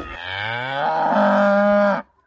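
A long moo, rising in pitch and then held, cutting off abruptly at the end.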